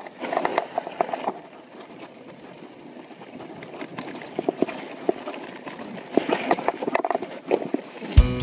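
Mountain bike rattling and clattering as it rides down a dry dirt trail, the tyres crunching over loose dirt and leaves, with irregular sharp clicks and knocks from the frame and parts over bumps.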